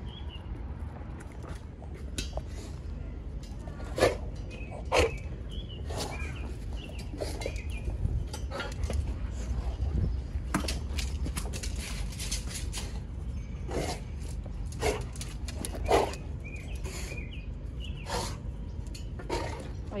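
Small birds chirping now and then, with scattered short knocks and rustles from handling close to the microphone over a steady low rumble; the loudest knocks come about four, five and sixteen seconds in.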